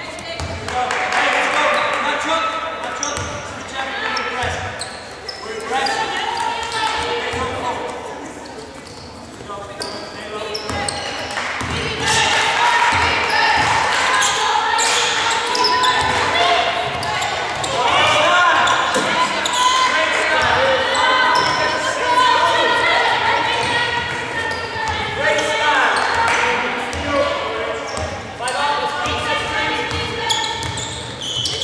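Basketball game sound: a basketball bouncing on the court amid players' shouts and calls, with no clear words.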